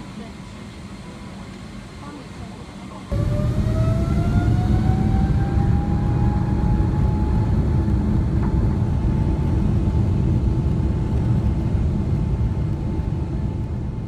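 Jet airliner engines heard from inside the cabin at a window seat. A steady moderate hum changes abruptly, about three seconds in, to a loud low rumble as the engines spool up to takeoff thrust for the takeoff roll, with a whine that rises in pitch over several seconds and then holds steady.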